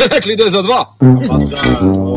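A man speaking, then about a second in a music jingle starts suddenly and plays on.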